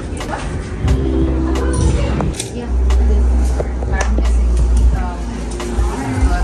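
Indistinct background chatter and music in a busy room, over a heavy low rumble that sets in about a second in, with scattered light clicks and knocks.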